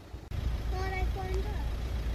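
Low, steady rumble of a car running, heard from inside the cabin, starting abruptly a moment in. A short voiced sound from one of the occupants around the middle.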